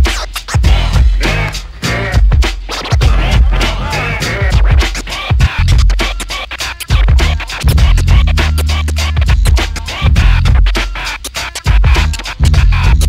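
Turntable scratching over a beat with heavy bass: a vinyl record pushed back and forth by hand, chopped on and off in quick stutters at the mixer.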